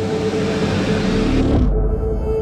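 Intro sting music: a sustained synth tone under a swelling whoosh with deep rumble that builds and cuts off abruptly near the end, a riser into the logo reveal.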